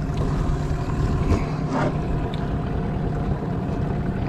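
Small boat's outboard motor running steadily at trolling speed, a constant low hum with wind and water noise over it.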